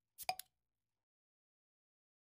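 Subscribe-button animation sound effect: a short click-pop with a brief pitched ring as the cursor clicks the notification bell, heard once in the first half second.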